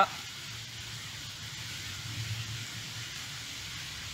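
Rain falling on woodland leaves: a steady hiss, with a low rumble underneath.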